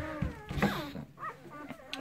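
Newborn working kelpie puppies whimpering faintly: a few thin wavering whines, then short high squeaks about a second in.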